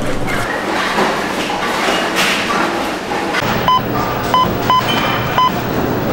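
Wheels of a rolling bowling-ball bag rumbling along a hard floor. Then a bowling lane scoring console's keypad beeps four times, short beeps a little under a second apart, as a bowler's name is typed in.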